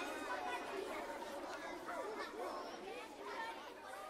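Faint babble of many overlapping voices, with no words that can be made out.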